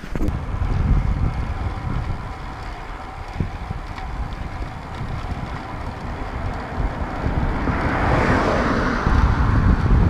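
Wind buffeting the microphone of a camera mounted on a moving road bike, over steady tyre and road noise. A rush of noise swells about eight seconds in as a car passes.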